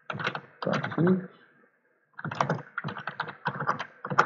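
Typing on a computer keyboard: a short burst of keystrokes, a pause of about half a second, then a quicker run of keystrokes as terminal commands are entered.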